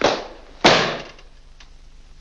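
A hardcover book slapped shut: a quick rush of noise, then a louder sharp slap about two-thirds of a second in.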